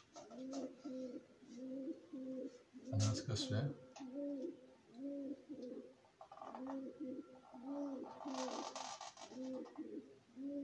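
Birds cooing over and over in a steady run of low, repeated calls. A few knocks come about three seconds in, and a short scratchy noise comes near the end.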